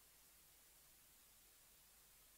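Near silence: only a faint, steady hiss, with no game sound or voices.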